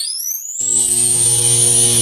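Synthesized logo sting: an electronic sweep rising in pitch that settles, about half a second in, into a steady electric hum with a thin high whine above it.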